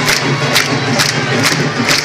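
Candombe drums of a parading comparsa playing, with strong strokes about twice a second, over the noise of a street crowd.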